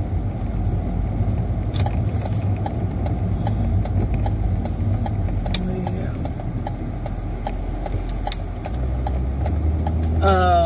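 Road noise inside a moving car's cabin: a steady low rumble of engine and tyres, with a few light clicks.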